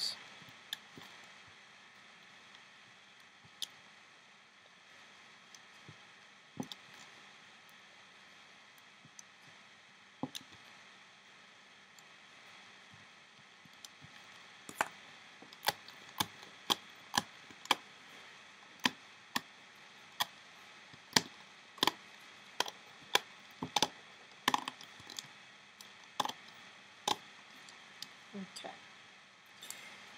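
Rubber loom bands and a metal hook clicking and snapping against the pegs of a plastic loom: a few scattered clicks at first, then a run of sharp clicks about two a second from about halfway through until near the end.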